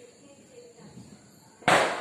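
A single firecracker bang about one and a half seconds in, a sharp crack that dies away over about half a second.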